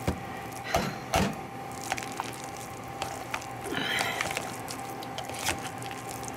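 A metal spoon stirs and scrapes through thick mashed potatoes in a plastic mixing bowl. The spoon knocks sharply against the bowl a few times in the first second or so, then soft squishing scrapes follow. A faint steady hum runs underneath.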